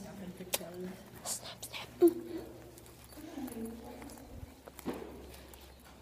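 Faint, indistinct voice sounds, mumbled or half-spoken, broken by a few sharp clicks and one short, louder sound about two seconds in.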